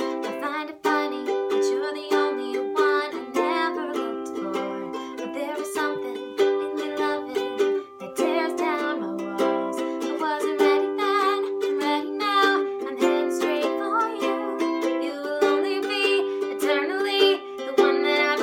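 Ukulele strummed in a steady rhythm, its chords changing every couple of seconds.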